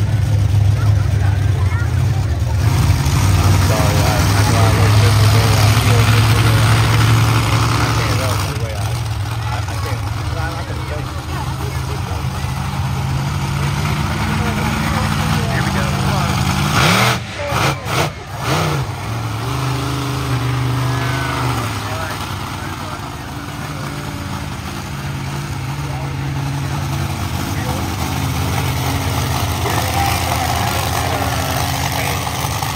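Monster truck engine running loud and low, with its pitch rising and falling as it is revved a couple of times, over crowd voices. The sound drops out briefly a few times a little past halfway.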